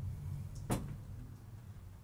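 A single short knock about two-thirds of a second in, over a low steady rumble.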